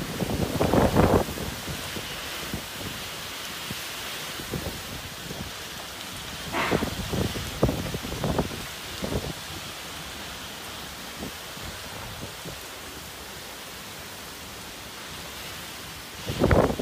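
Typhoon wind and heavy rain: a steady hiss of rain, with strong gusts buffeting the microphone. The gusts are loudest in the first second and come again in several shorter bursts in the middle.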